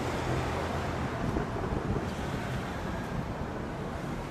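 Wind buffeting the microphone: a steady rumble with a hiss over it.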